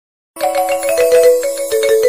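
Short electronic intro jingle: a melody of held synth notes over a fast, even ticking beat, starting about a third of a second in.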